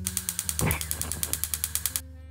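Rapid, even mechanical clicking, about ten clicks a second, with a short whoosh about half a second in, over soft guitar music.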